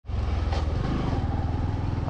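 Bajaj Discover single-cylinder motorcycle engine running steadily while riding, with road and wind noise over the bike-mounted microphone.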